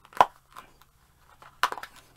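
Small cardboard product box being handled and pulled open: one sharp snap about a quarter second in, then a short run of crackling near the end.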